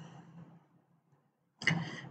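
Near silence in a pause between spoken words: the last of a voice fades out, then nothing, then a faint brief sound near the end.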